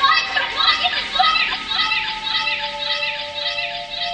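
Experimental electronic music: a quick repeating run of short, voice-like chirps, each bending up and down, about four a second, with two held synth notes coming in during the second half.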